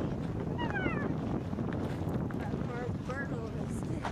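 Wind rumbling on the microphone, with a few short high-pitched voices gliding up and down about half a second in and again around three seconds in.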